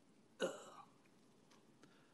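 A single short vocal sound from a person, about half a second in, that starts sharply and fades within a few tenths of a second. The rest is quiet room tone with a couple of faint ticks.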